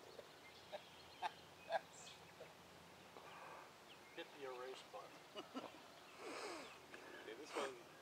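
Quiet outdoor sound with a few short sharp clicks in the first two seconds, then faint, indistinct voices about halfway through.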